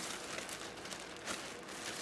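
Thin plastic shopping bag rustling and crinkling as hands rummage through it.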